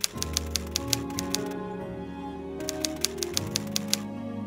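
Typewriter key-click sound effect: two runs of crisp clicks at about five a second, with a pause of about a second between them, over slow music with sustained chords.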